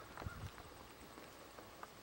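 A few faint, sharp knocks over low background noise: two close together about a quarter second in, the louder of them, and a single one near the end.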